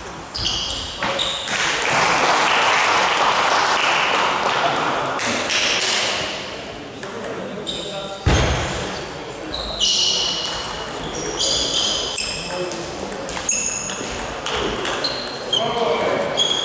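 Table tennis ball clicking off bats and table in a quick run of sharp ticks through the second half, after a single loud thump just before the rally starts. Voices murmur around a large sports hall throughout.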